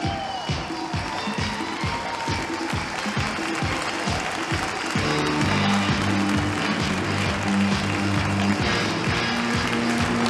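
Live disco music from the band on stage, with a steady beat of about two strokes a second; a heavier bass line comes in about halfway. Audience applause runs along with it.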